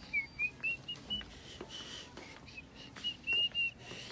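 A person whistling a tune: a quick run of short notes climbing in pitch, one longer held note, then another run of short notes.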